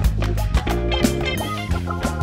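Instrumental band music: electric guitar over bass and drums, with steady drum hits.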